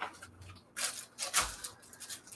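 A small stack of paper journal pieces being handled: a few brief paper rustles and taps as it is squared up, then a soft thump about one and a half seconds in as it is set down on a cutting mat.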